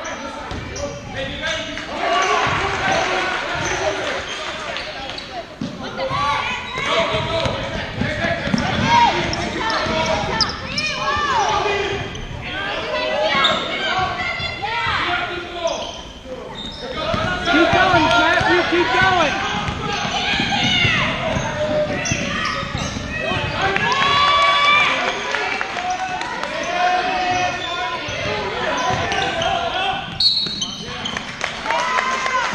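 A basketball bouncing on a hardwood gym court during play, with players' and spectators' voices and calls echoing in a large gym.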